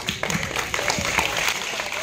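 Audience applauding, a steady patter of many hands clapping together.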